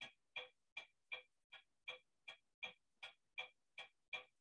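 Faint, evenly spaced mechanical ticking, a little under three ticks a second, each tick identical.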